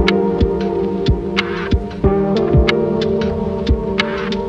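Background music: held synth chords over a low, steady beat about twice a second, with the chords changing about halfway through.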